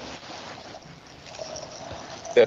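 Steady background noise hiss from an open microphone on a video call, with no words over it: the background noise that keeps cutting the speaker out.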